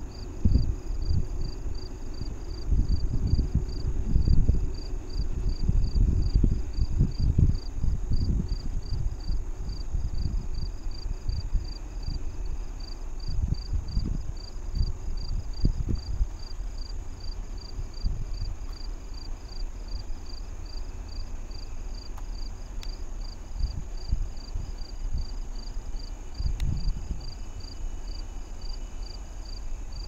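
Insects chirping in an even, rapid pulse that runs steadily throughout, over an irregular, gusty low rumble that is loudest in the first half.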